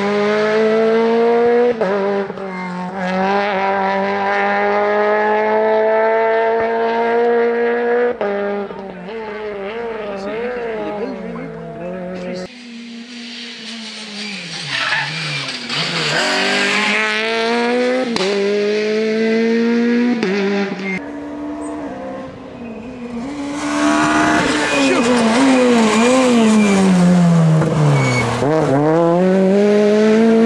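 Peugeot 208 VTi R2 rally car's 1.6-litre four-cylinder engine at high revs over several edited passes. The pitch climbs through the gears, drops at each gear change, and twice swoops sharply down and back up as the car brakes and shifts down for a corner.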